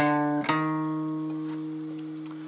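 Capoed acoustic guitar playing two quick notes about half a second apart, the bass walk-up into a C chord, then left ringing and slowly fading.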